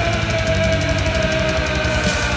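Thrash metal recording playing: a fast, driving beat with one long held note on top that sinks slightly in pitch.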